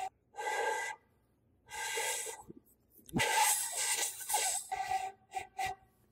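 Homemade PVC pipe flute blown by a beginner in several breathy attempts: mostly rushing air with a faint note, a longer wavering blow in the middle and a few short toots near the end. It is hard to get any sound at all from it.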